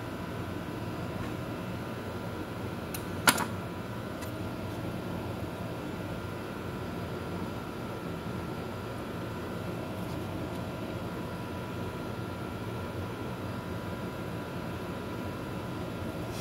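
Steady mechanical hum with a faint high whine, and one sharp clink about three seconds in.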